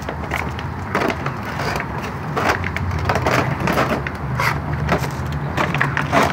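A Rottweiler chewing and crushing a plastic jug, making irregular crackling crunches of the plastic, over a low steady hum.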